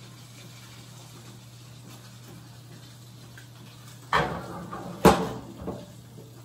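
Kitchen handling clunks: a sharp knock, a louder one about a second later, and a lighter knock just after, as things are handled with an oven mitt.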